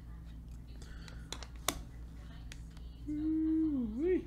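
A few light clicks and taps of hard plastic card holders being handled on a table, then near the end a person's voice holds one long note for about a second, dipping and rising at the end.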